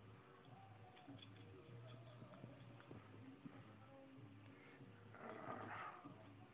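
Near silence, with faint small clicks of steel nuts being handled on a threaded rod, and a short rasping rustle about five seconds in.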